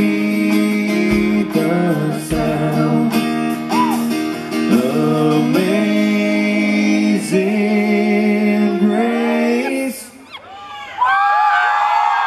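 A live acoustic guitar and a man's singing voice, with long, sliding sung notes, closing a country song. About ten seconds in the music stops, and high, sliding whoops follow near the end.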